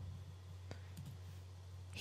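A few faint clicks of a computer mouse near the middle, over a low steady hum.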